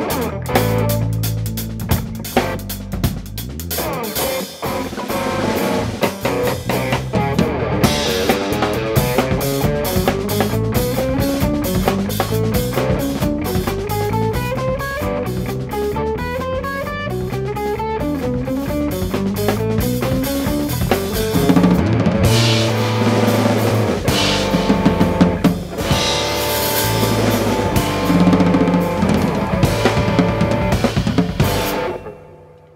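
Live electric guitar, electric bass and drum kit trio playing an improvised funk and blues jam. A stretch of fast, repeated climbing note runs fills the middle, over steady drums.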